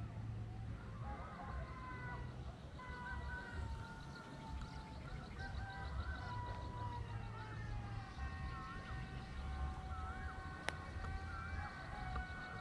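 Wind rumbling on the microphone, under several faint, sustained high tones that drift slowly down in pitch, with small warbles.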